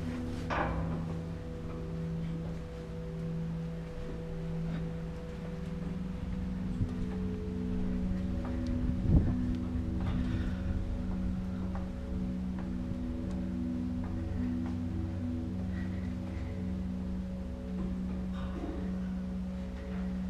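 Slow ambient background music of long held notes, the chord shifting about five seconds in. A few knocks from hands and feet on the steel rungs of a caged ladder sound over it, the loudest near the middle.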